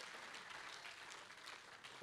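A congregation clapping its hands in applause, faint and even, heard at a distance from the pulpit microphone.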